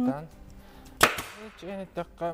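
A single sharp crack about a second in, trailing off over about half a second.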